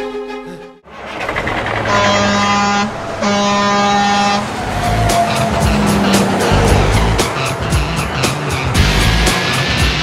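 The film's music fades out, then a truck horn sounds two long blasts about a second apart, followed by a jingle with a steady beat.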